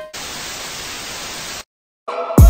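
A burst of TV-style static, steady white noise about a second and a half long, that cuts off suddenly into silence.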